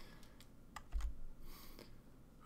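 Light clicks of a computer being operated by hand: a few sharp clicks about three quarters of a second in, a soft thump at about one second, then a brief rustle.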